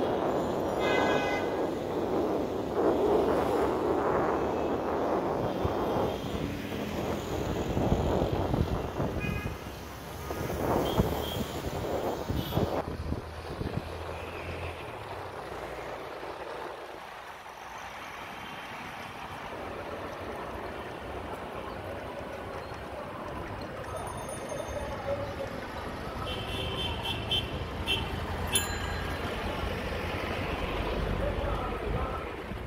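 Busy city street traffic heard while riding along: a continuous mix of auto-rickshaw, car and truck engines and tyres. Short horn toots sound near the start and again near the end.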